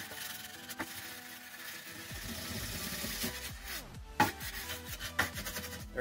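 Hand file rasping back and forth along the edge of a wooden crossbow body, with a few sharper strokes later on, under background music.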